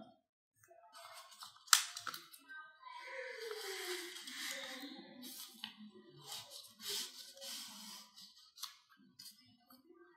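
Paper and card stock being handled: rustling and sliding as a paper tie is pulled out of its pocket on a handmade greeting card, with a sharp tap just under two seconds in and further short rustles later.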